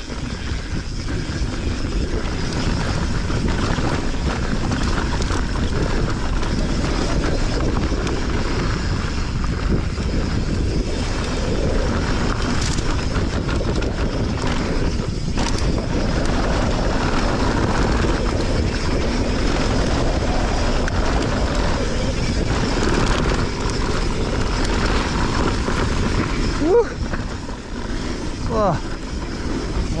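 Mountain bike rolling fast down a dry dirt and rock trail: a steady rush of tyre noise and wind over a chest-mounted action camera, with the rattle of the bike over rough ground. Near the end, two short squeals rise and fall in pitch.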